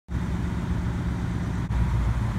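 Ford Mustang GT's 5.0-litre V8 idling with a steady low rumble.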